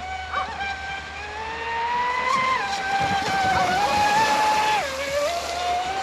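Traxxas Spartan RC boat's brushless motor whining at speed over the hiss of the hull through the water. The pitch climbs about two seconds in, drops near the end as the throttle eases, then comes back up.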